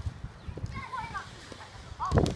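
Children's voices calling out briefly, high-pitched, about two-thirds of the way through, over a run of low thumps from feet running on grass.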